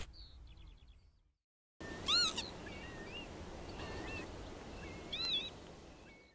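Wild birds calling over a soft outdoor background, starting about two seconds in: a loud rising-and-falling call, a few small chirps, then another rising-and-falling call near the end.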